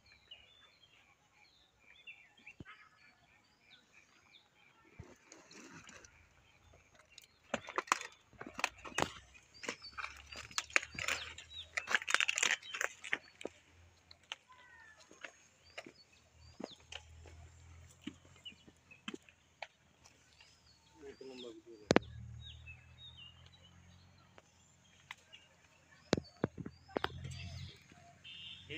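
Outdoor field ambience: small birds chirping repeatedly, with a cluster of clicks and rustling from about eight to thirteen seconds in and a single sharp click a little after twenty seconds.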